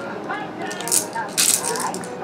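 Baby's plastic rattle toys being shaken and handled, with two short rattling bursts, about a second in and again around a second and a half.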